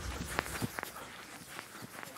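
Bare feet shuffling and scuffing in sand as two ssireum wrestlers grapple, with a few short scuffs in the first second.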